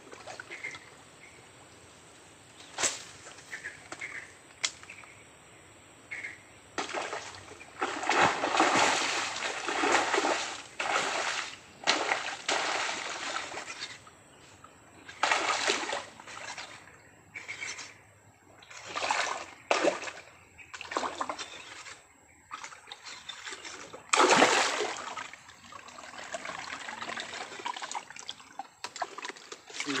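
A hooked snakehead (haruan) thrashing at the water surface: a series of loud splashes in bursts, starting about seven seconds in after a few quiet seconds.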